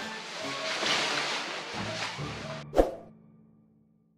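Background music that cuts off abruptly, followed by a single sharp cinematic hit sound effect that rings out and fades away.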